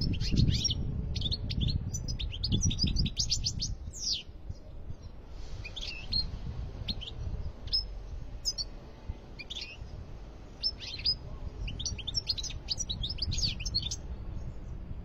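Caged European goldfinch singing in quick runs of high twittering notes. The song breaks off about four seconds in, goes on as a few scattered notes, then picks up into another fast run near the end.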